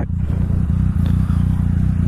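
Yamaha FZ-09 inline-three motorcycle engine idling steadily while the bike waits at an intersection.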